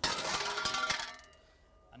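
Breech of a WOMBAT recoilless rifle pulled open by its lever, with the spent cartridge case coming out: a sudden metallic clang that rings on for about a second and dies away.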